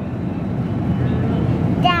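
Steady low rumble of grocery-store background noise by an open refrigerated dairy case, with a child's voice starting near the end.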